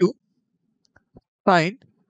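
Two faint clicks of a stylus tapping on a tablet screen while handwriting, followed by a short spoken syllable about one and a half seconds in.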